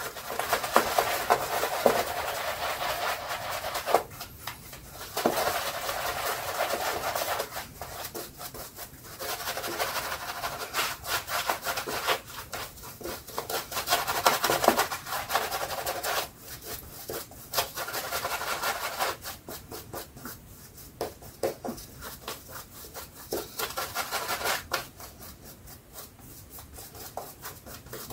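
Shaving brush working shaving-soap lather over the face and chin: rapid wet brushing strokes, in spells broken by brief pauses.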